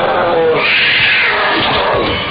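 A loud, shrill wailing cry: a short lower cry, then a piercing shriek beginning about half a second in and lasting about a second.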